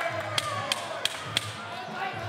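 Four sharp, evenly spaced claps or knocks, about three a second, over a low background murmur.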